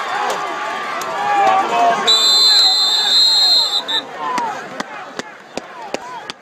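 Football crowd shouting and cheering, then about two seconds in a referee's whistle blows one steady, shrill blast lasting nearly two seconds, blowing the play dead.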